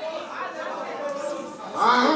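People's voices in a large hall, talking over one another, with one voice growing louder near the end.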